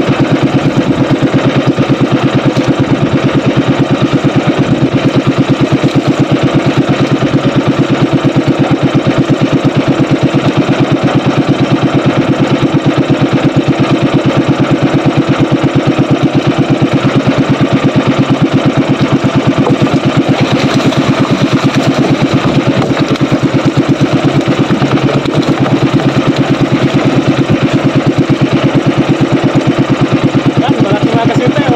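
The engine of a motorized outrigger fishing boat running steadily under way, loud and close, with fast, even firing pulses.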